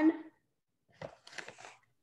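A tablespoon scooping zinc oxide powder out of its bag: a few short scraping and rustling sounds about a second in.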